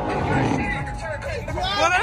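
A car engine running hard during a burnout, its pitch falling in the first second, with voices coming in near the end.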